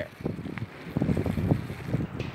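Wind blowing across the phone's microphone: an uneven, low rumbling noise that rises and falls.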